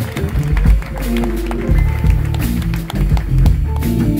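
A live jazz-funk band plays a groove: an electric bass line, drums with short cymbal and snare strikes, keyboard chords and electric guitar.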